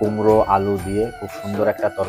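Background music with a singing voice over a steady bass line.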